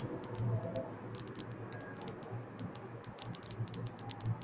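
Irregular light clicks of typing on a computer keyboard, a quick scatter of keystrokes over a faint background hum.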